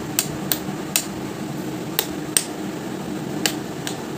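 A series of small, sharp clicking taps at irregular intervals, about seven in four seconds, made by hand as 'kutus kutus' noises in the dark. A steady low hum runs underneath.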